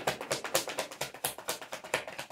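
Tarot deck being shuffled by hand: a rapid, even run of card clicks, about ten a second.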